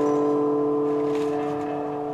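A chord on a classical guitar left ringing and slowly fading, with no new strum.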